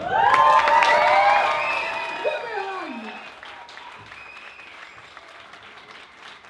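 Audience applauding and cheering with whoops and shouts, loudest at the start and fading away over the last few seconds; one shout falls in pitch about two and a half seconds in.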